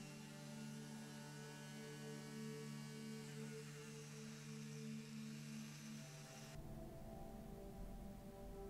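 Flexible-shaft rotary tool spinning a small wire brush wheel against a diecast model's steel axle to polish it, a faint steady motor whine with a high hiss that stops abruptly about six and a half seconds in, leaving a low hum.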